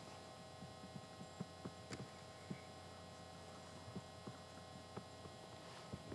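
Faint steady electrical mains hum, with a few scattered faint clicks.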